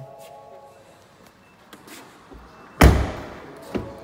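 A car door, the BMW 3 Series rear door, shut with one loud thud near the end, followed by a smaller knock about a second later.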